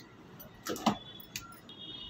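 A few faint clicks and taps of kitchenware being handled, with a short faint high tone near the end.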